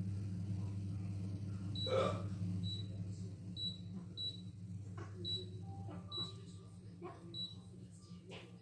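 Pot of wild greens boiling under a glass lid on a glass-top electric hob: a steady low hum, with a brief louder sound about two seconds in. A short high pip repeats roughly once a second through the middle.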